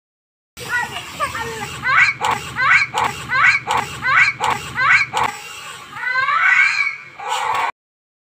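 Young children shrieking in a row of six short rising cries, about one every 0.7 seconds, then one longer rising cry, over a low steady hum that stops about five seconds in. The sound starts and cuts off abruptly.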